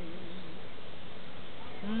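A woman's voice holding and letting go of the last note of a sung devotional line, fading out in the first half second, then a steady background hiss, until a woman's singing voice starts the next line with a rising note just before the end.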